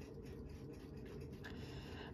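Faint light rubbing and scratching as a fine wire oiler touches a pocket-watch movement held in the fingers, over low room tone.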